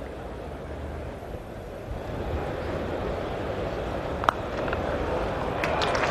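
Cricket ground crowd murmur on a TV broadcast, with one sharp crack of bat on ball about four seconds in. Crowd applause begins to swell near the end as the ball goes for runs.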